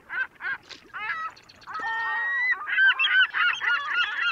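Birds honking: a quick run of short calls, about three a second, then a longer held call near the middle, and many calls overlapping toward the end.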